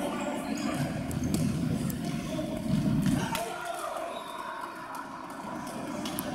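Echoing sports-hall sound of an indoor futsal game: scattered sharp knocks of the ball being kicked and distant voices of players calling out, over a low rumble that drops away about three and a half seconds in.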